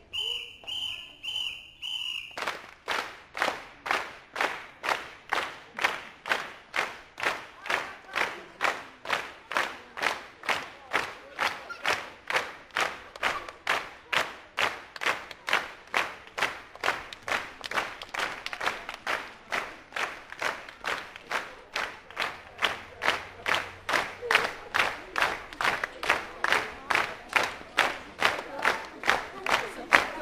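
A whistle blown in a few short pulsing blasts, then a group clapping a steady, even beat of about two to three claps a second, with crowd voices behind.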